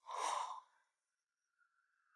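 A person's short, breathy sigh lasting about half a second. A faint, high held tone comes in about a second and a half in.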